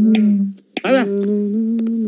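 A low, steady humming note, held without words. It breaks off about half a second in and starts again just before the one-second mark with a brief sliding attack.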